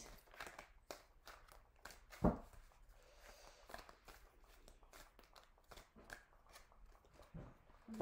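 A deck of round animal totem oracle cards being handled and shuffled by hand: faint scattered clicks and rustles of card stock, with one louder knock a little over two seconds in.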